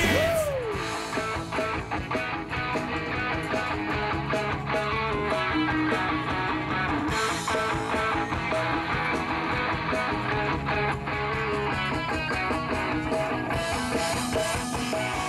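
Rock band playing with electric guitars and drums keeping a steady beat.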